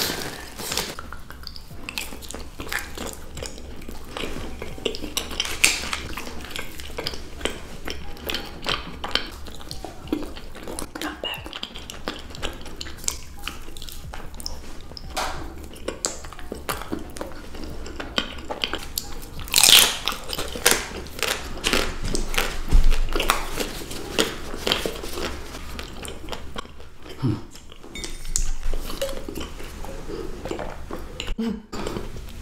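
Close-up ASMR eating sounds: biting into and chewing chocolate bars and chocolate-coated cakes, with irregular crisp snaps, crunches and wet mouth sounds. One crunch about two-thirds of the way in is louder than the rest.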